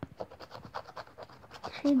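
Scratch-off lottery card being scratched with a small hard tool: a quick run of short, dry scraping strokes across the card's latex coating.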